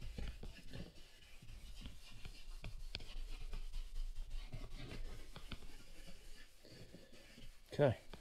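A leather scrubbing brush rubbing foaming cleaner into a leather car seat, a quick, irregular scratchy scrubbing under light pressure.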